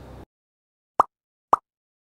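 Two short pops about half a second apart, out of dead silence, like end-screen sound effects.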